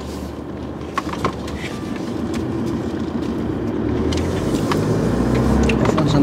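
Road and engine noise inside a moving car's cabin, growing steadily louder, with a couple of faint clicks about a second in.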